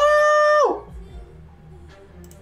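A man's high-pitched, held "Oh!" shout of excitement, lasting about two-thirds of a second and dropping in pitch as it cuts off. Faint background music follows.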